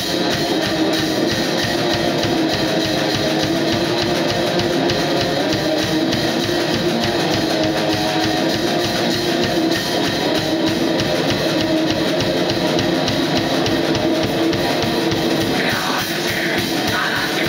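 Live black metal played by a guitar-and-drums duo: distorted electric guitar strummed over fast, dense drumming on a drum kit, with no vocals until a voice comes in right at the end.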